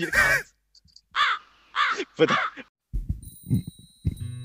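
A high, pitched-up voice doing a mock beatbox: three short squawks that rise and fall in pitch, much like a crow's caw. A few low, soft thumps follow near the end.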